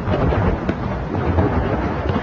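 A loud, steady, deep rumbling noise with no distinct strikes or breaks.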